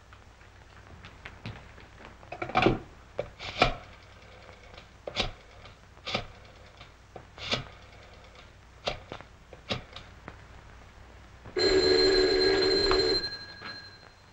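A rotary desk telephone being dialled: a string of separate clicks and short rattles over several seconds. Near the end, a telephone rings once at the other end for about a second and a half.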